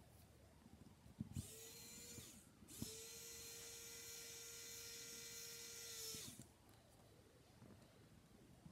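Small electric screwdriver running in two bursts, a short one about a second in and a longer steady one of about three seconds, driving nylon fasteners onto a drone flight-controller stack.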